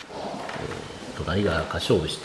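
A man's low, drawn-out vocal sound starting about a second in, with no clear words.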